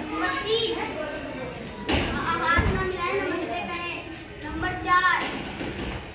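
Children's voices speaking and calling out in a hall, with a knock and a thud about two seconds in.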